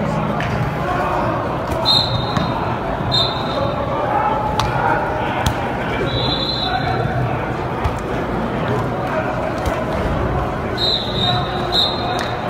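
Players and coaches calling out in a large, echoing indoor football practice hall, with scattered thuds of bodies and pads hitting during drills and several short high-pitched tones.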